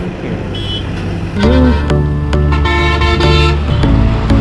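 Road traffic noise as a bus passes, then a loud vehicle horn of several tones that changes pitch, from about a second and a half in to near the end, with background music under it.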